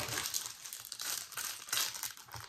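Clear plastic packaging crinkling and rustling irregularly as it is handled and an item is drawn out of it.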